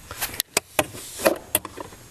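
Irregular clicks and knocks of a wrench and hands working on a car's interior trim panel while its 10 mm retaining nuts are taken out: about six short sharp taps with light scraping between them.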